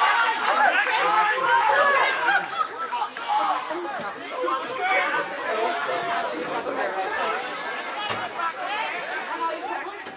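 Many voices shouting and talking over one another on a football pitch, loudest in the first two seconds and then settling into lower chatter.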